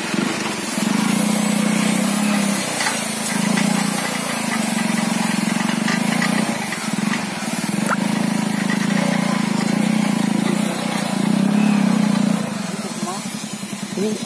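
Small motorcycle engine running at low speed while towing a steel soil-levelling bar through loose soil. It swells and eases in stretches of a few seconds and drops back near the end.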